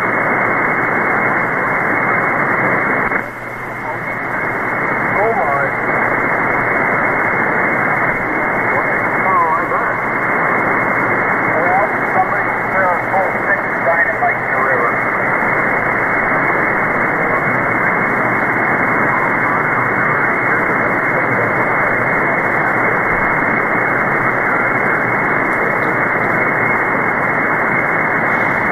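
Shortwave receiver audio from the SDRplay RSPduo tuned to 1.930 MHz lower sideband on the 160-metre amateur band: steady, narrow static hiss with a weak ham operator's voice faint under the noise. The hiss dips briefly about three seconds in.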